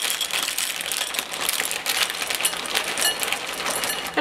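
White chocolate chips pouring from a bag into a ceramic bowl: a dense, continuous patter of small clicks as the chips land on the china and on each other.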